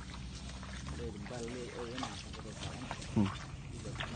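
Indistinct voices talking, with a short louder vocal sound about three seconds in, over water sloshing as water buffalo wade in a shallow pond.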